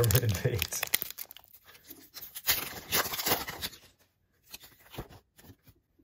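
Foil wrapper of a Pokémon card booster pack being torn open by hand, a run of sharp crackles and crinkles over the first three seconds or so, then quieter.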